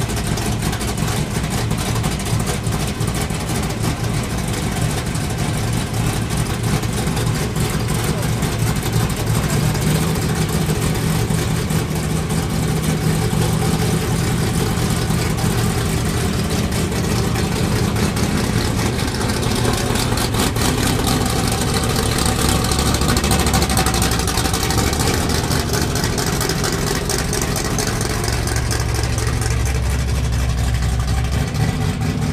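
Supercharged engine of a 1963 Ford Galaxie, its blower sticking up through the hood, running loudly at idle. Its low rumble grows near the end as the car pulls away.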